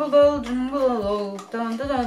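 A young woman's voice talking, with no other sound standing out.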